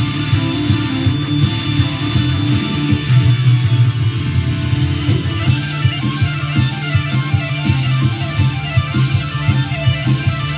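A Gibson Les Paul Classic Gold Top electric guitar played fast over a recorded rock band track with a steady drum beat.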